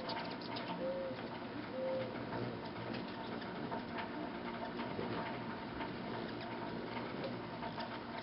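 Hummingbirds feeding and flying at nectar feeders, with short sharp chips scattered throughout. A low cooing call of three short notes is heard in the first two seconds.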